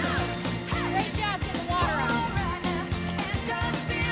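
Background music: a pop-rock song with a steady drum beat, a held bass line and a gliding melody.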